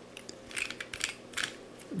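Plastic clicks from a corner-turning octahedron twisty puzzle as it is turned and handled: a short run of light clicks in the middle.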